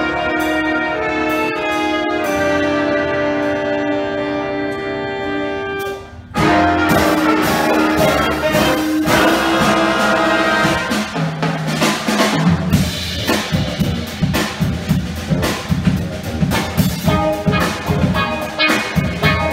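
Jazz big band playing live: held brass and saxophone chords, a short break about six seconds in, then the full band comes back in loud. A steady drum beat drives the second half.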